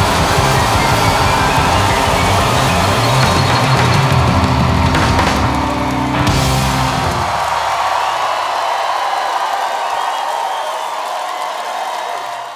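Live rock band with electric guitars, bass and drums playing the closing bars of a song. The bass and drums stop about seven seconds in, and the rest of the sound carries on more quietly.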